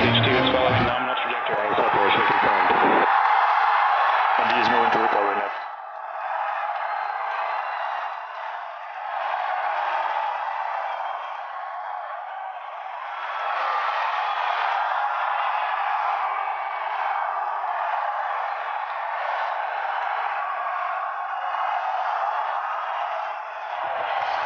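A crowd cheering and shouting, mixed with music; the deeper musical part drops away about five seconds in, leaving the crowd's noise.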